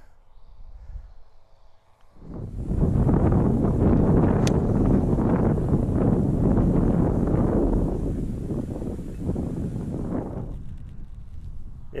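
Wind buffeting the microphone, starting about two seconds in and dying away near the end, with one sharp click of an iron striking a golf ball partway through.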